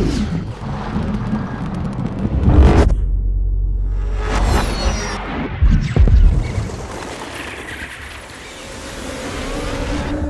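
Sound-design effects of a Dolby 7.1 surround-sound demo ident: deep booms and rumbles with whooshing sweeps over cinematic music. Heavy hits come near the start, about two and a half seconds in and about six seconds in, and a glittering swell rises toward the end.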